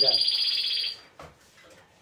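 A caged timbrado canary singing a steady, high note that cuts off about a second in.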